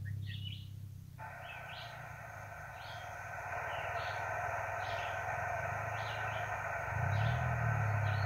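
HF transceiver speaker hissing with band noise on 20 metres and no station coming through: the receiver's static switches on abruptly about a second in and then holds steady, which is the band sounding noisier as propagation fades. A bird chirps about once a second over it.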